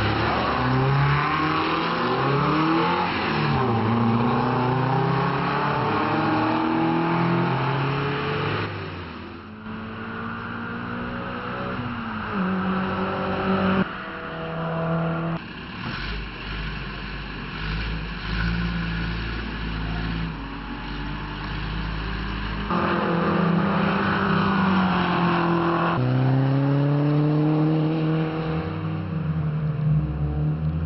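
Sports-car engines, among them Toyota MR2 Spyders, revving and rising and falling in pitch as the cars accelerate and pass on the circuit. The sound changes abruptly several times where one clip cuts to the next.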